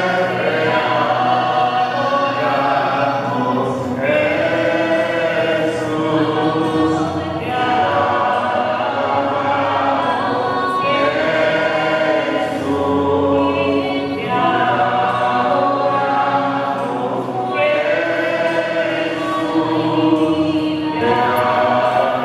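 A church congregation singing a worship song together, in sung phrases of three to four seconds with short breaks between them.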